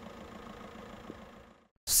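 Faint, steady sound of street traffic with a car engine running, which cuts off to silence shortly before the end.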